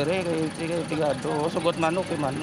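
A man talking, with a steady low hum of an idling engine beneath his voice.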